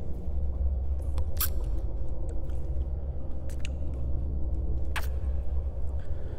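Close-up kissing sounds: a handful of short, sharp lip smacks spaced irregularly, about five in all, over a steady low rumbling background.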